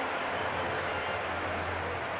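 Steady ballpark crowd noise, an even murmur of a large stadium audience, with a low hum underneath.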